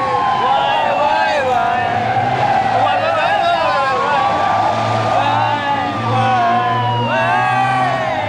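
Many overlapping voices calling out long, drawn-out 'why?'s in a dense chorus, their pitches rising and falling and crossing one another, over a steady low hum.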